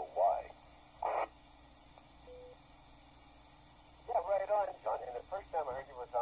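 Speech received over VHF and heard through the QYT KT-WP12 radio's speaker, thin and narrow-band like a two-way radio. A short pause with hiss and a brief faint tone about two seconds in, then the talk resumes near four seconds in.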